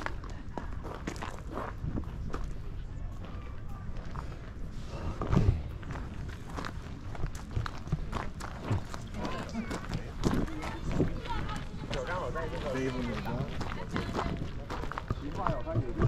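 Footsteps crunching on a gravel path, with the chatter of other people's voices in the background.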